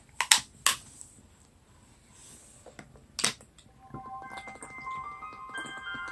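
A few sharp knocks in the first three seconds, then about four seconds in the score enters with several held notes.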